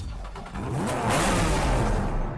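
A car engine revving hard, its pitch sweeping up and down over a rushing roar that grows louder about half a second in.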